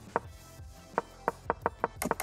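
Chess.com's wooden piece-move sound effect clicking six times, coming faster in the second half, as moves are stepped through on the analysis board, over faint background music.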